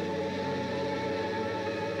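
Congolese rumba music: a steady held chord of sustained notes with no beat.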